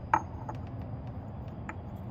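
A few light clicks and taps from a 35 mm steel socket being handled near a billet aluminium fuel bowl lid, with one sharper click just after the start, over a low steady hum.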